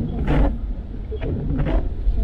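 A car driving on a rain-soaked road, heard from inside: a steady low road rumble, with a brief swish about every second and a half.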